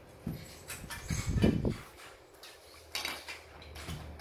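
Hard plastic toy parts clicking and clattering as they are handled, with a louder, low rumbling thump about a second and a half in.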